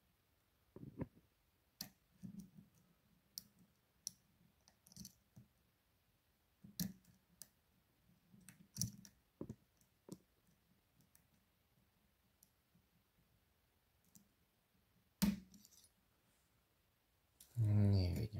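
Lock-picking tools clicking and tapping in a Potent 5-pin dimple-profile padlock as it is picked open: scattered light clicks, with one louder click about fifteen seconds in.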